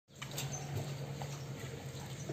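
A steady low mechanical hum, such as a motor or engine, with scattered light clicks and taps over it.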